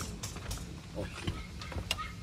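A short spoken "okay" over a steady low background rumble, with a few light clicks.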